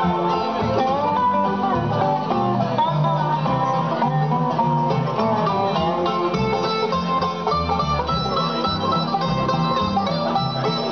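Live acoustic bluegrass band playing an instrumental passage: five-string banjo, dobro, mandolin, acoustic guitar and upright bass, with quick plucked runs over a steady bass line.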